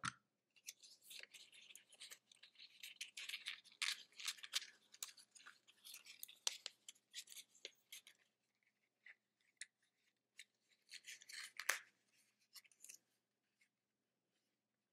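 Faint rustling and crinkling of a sheet of paper being handled and rolled into a cone, heard as scattered soft crackles. The crackles are dense for the first several seconds, then sparse, with a short flurry of rustling a little before the end.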